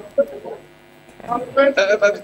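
Speech: a voice hesitating with "um" and calling "hello", with a steady electrical hum that shows in the pause in the middle.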